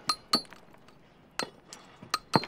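Pickaxe striking rock, giving sharp metallic clinks with a short ring. Two strikes come close together at the start and a third about a second and a half in.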